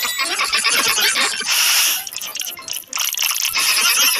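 Cartoon soundtrack effects: a brief bell-like ding, then a dense rattling, clinking clatter with two stretches of hiss, one in the middle and one near the end.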